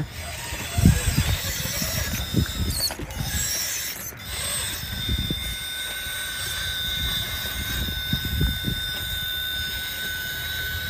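Radio-controlled 1/10-scale rock crawler's electric motor and geared drivetrain whirring as it crawls slowly up a rock obstacle. A steady high whine sets in about four seconds in, over low irregular thumps.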